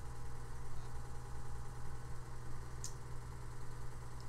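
Steady low hum of background noise in the recording, with one brief faint high tick about three seconds in.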